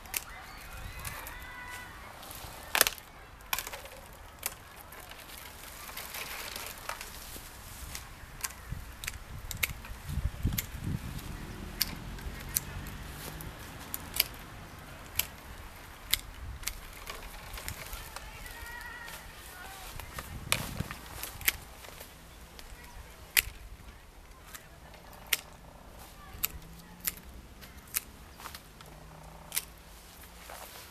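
Hand pruning shears cutting apricot branches: a series of sharp snips as the blades close, irregularly spaced, often a second or two apart.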